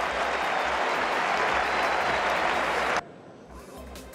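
Tennis stadium crowd applauding, a dense steady clapping that cuts off abruptly about three seconds in, leaving much quieter court sound.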